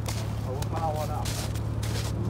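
Pickup truck engine idling, a steady low hum, with footsteps crunching in snow.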